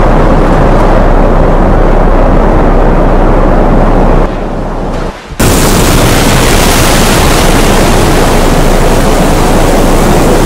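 Hurricane-force wind blowing hard over the microphone, very loud. About four seconds in it drops away for a second, then gives way to a loud, steady rush of floodwater pouring through a dam spillway.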